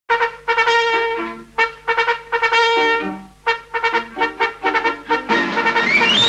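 Brass fanfare led by trumpets: a march-like introduction of longer held notes and short repeated notes that opens a military parade song.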